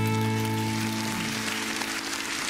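The accompaniment holds the song's final chord, with audience applause starting up about a second in and growing.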